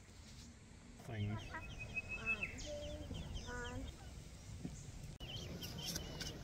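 Birds calling: a run of short high chirps and peeps mixed with some lower pitched calls, starting about a second in.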